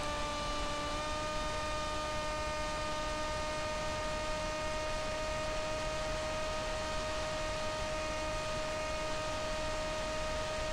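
Steady, high-pitched electric whine of a small brushless motor and propeller at constant throttle, with hiss behind it. The pitch steps up slightly about a second in, then holds level.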